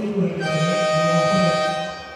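A broadcast replay-transition sting: a bright, sustained synthesized chord that enters about half a second in and holds steady for about a second and a half, under a man's drawn-out voice.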